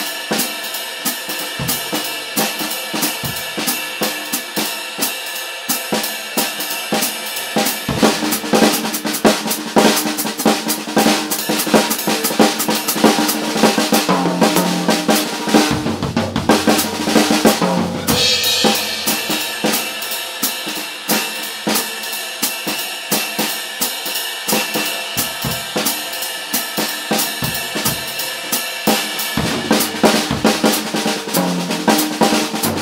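Jazz drum kit played with sticks: swing time on the ride cymbal and hi-hat, then about eight seconds in a busier, louder stretch of snare and tom figures, an eight-bar break set against the time. Deeper drums come in near the end of that stretch, a cymbal crash lands about eighteen seconds in, and the swing time resumes.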